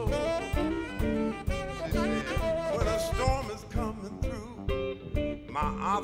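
Live blues band playing an instrumental passage between sung verses: drums keeping a steady beat under bass, electric guitar and a saxophone.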